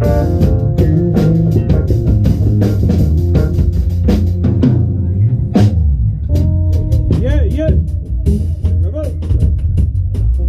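A live band playing: electric bass guitar, drum kit and keyboard, with a busy bass line. Past the middle the playing thins and a few notes bend and waver in pitch before the full band comes back in.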